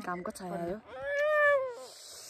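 A small child's drawn-out whining cry: one long call that rises and then falls in pitch, after a few short vocal sounds.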